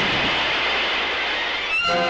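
Cartoon sound effect of a fire burning with a steady hiss that fades slightly. Orchestral music comes in near the end.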